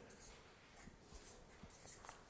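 Faint strokes of a felt-tip marker writing letters on flipchart paper, a series of short scratches.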